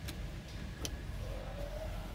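Low rumble of a car's engine idling, heard from inside the cabin, with two light clicks and a faint, slightly rising whine in the second half.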